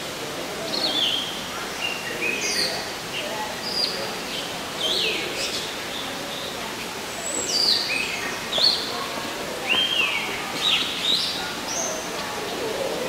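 Several birds chirping, with many short, clear calls that often fall in pitch, coming irregularly throughout, a few louder ones around the middle and near the end.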